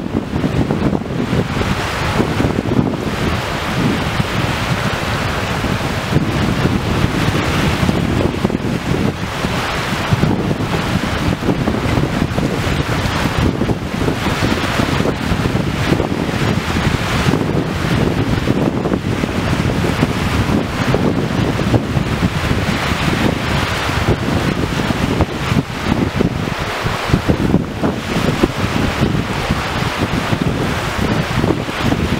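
Wind blowing hard across the microphone with a low, buffeting rumble, over small waves washing against the shore.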